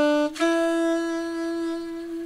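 Alto saxophone playing a short written B and then a long held written C sharp (sounding D and E), the closing notes of a phrase.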